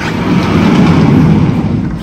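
Loud, steady rushing and rumbling of wind on the phone's microphone at an open balcony door.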